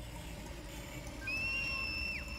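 A single thin, high tone, steady like a whistle, comes in a little over a second in, holds for under a second and drops away at the end, over a faint low hum.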